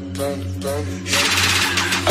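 Deep house / Brazilian bass track: a short vocal-like synth phrase repeats about twice a second over a held bass. About a second in, it gives way to a loud noise build-up with a rapid roll, rising toward the drop.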